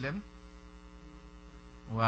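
Steady electrical mains hum from the microphone and recording chain, a low buzz with many even overtones. A man's voice trails off just after the start and comes back near the end.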